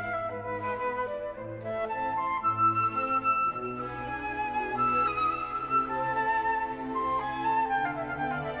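Instrumental classical music: a flute melody of held notes moving step by step over soft string accompaniment.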